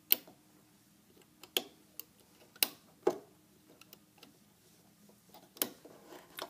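Rubber loom bands and fingers clicking against the plastic pins of a bracelet loom as bands are placed and pressed down: about six sharp, irregular clicks.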